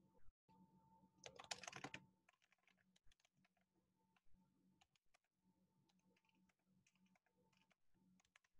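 Faint typing on a computer keyboard: a quick run of key clicks about a second in, then scattered single keystrokes.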